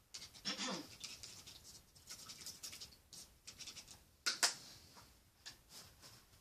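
Handling noise close to the microphone: a string of short scratchy rustles, with a sharper, louder one about four seconds in.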